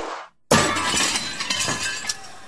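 Glass-shattering sound effect in the dance music mix: a sharp hit, then a brief dead-silent break, then a sudden crash of breaking glass about half a second in that scatters on for over a second.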